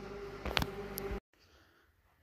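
A steady low hum with a faint held tone and two light clicks, which cuts off abruptly about a second in, leaving near silence.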